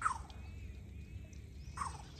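Two short animal calls, each falling in pitch, one at the very start and a briefer one near the end, over a steady low hum.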